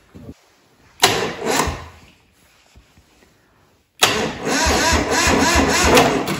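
Starter motor cranking the Northern Lights generator's small marine diesel engine in two attempts: a short one about a second in and a longer one from about 4 s, with an even beat of compression strokes. The engine turns over without catching, a no-start blamed first on a weak battery and then on air being drawn into the fuel system.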